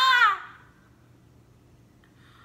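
A woman shouting a long call through cupped hands. The call ends with a falling pitch about half a second in, then near silence with a faint low hum.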